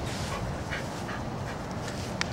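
A French bulldog's faint breathing and small sounds, with a few brief soft noises, over a low, steady background rumble.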